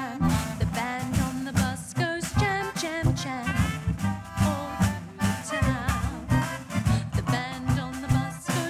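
Small band playing an oom-pah marching-style jam: sousaphone bass notes on the beat, snare drum, and a saxophone melody over accordion and double bass.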